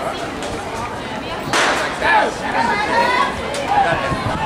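A starter's pistol shot about one and a half seconds in, starting an 800 m race, heard among spectators' chatter.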